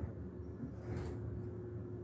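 Quiet outdoor background: a low rumble and a faint steady hum, with a brief soft rustle about a second in.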